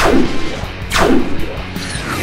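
Background music with two edited-in blast sound effects about a second apart, each a sharp hit that falls quickly in pitch.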